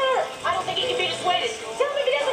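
Movie trailer soundtrack playing through a television's speaker: background music with a short falling whine at the start and a few yips, like a dog whimpering.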